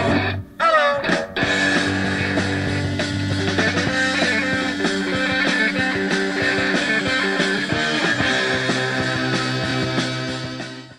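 Power-pop rock band playing loudly on electric guitar, bass and drums. About half a second in the music breaks briefly and a falling, sliding note cuts through before the full band carries on.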